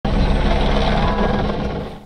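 Helicopter flying overhead, its rotor and engine making a steady low drone that eases off slightly near the end.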